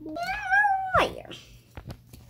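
A high, drawn-out meow-like cry lasting under a second, held fairly level and then falling away, followed by a couple of faint clicks.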